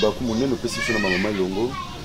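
Speech: a man talking, in words the recogniser did not take down.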